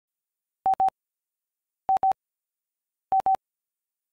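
Electronic beep tone at one steady pitch, sounding three pairs of short beeps about a second and a quarter apart.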